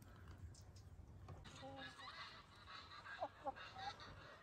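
Faint calls of farm birds: a handful of short calls in the second half, over fainter high twittering.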